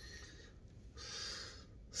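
A faint breath, a soft hiss lasting under a second about halfway through, against quiet room tone.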